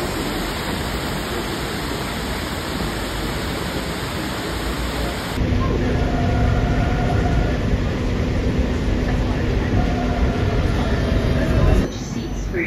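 Heavy rain pouring, a steady hiss for about the first five seconds. It then gives way suddenly to the low rumble of a moving train heard from inside the carriage, with a steady hum.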